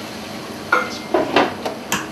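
Cookware clatter at an electric skillet of cooking chicken: a few sharp clanks of the skillet lid and a small measuring cup, starting about two-thirds of a second in, with short sizzles as a quarter cup of water goes into the hot pan.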